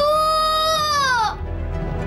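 A young girl wailing as she cries out for her mother: one long crying call, held steady for over a second and then falling away.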